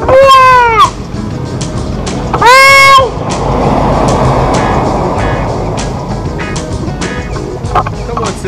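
A toddler calls out a long, high-pitched "bye" twice, about two seconds apart, each call rising and then falling in pitch. Background music plays underneath, and a steady rushing noise fills the time after the second call.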